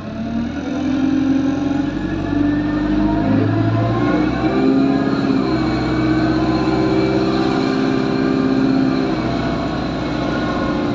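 Alexander Dennis Enviro200 single-decker bus's diesel engine pulling, heard from inside the passenger saloon. The engine note rises and drops in steps through the automatic gearbox's shifts, under a faint high whine that climbs as speed builds and then holds steady.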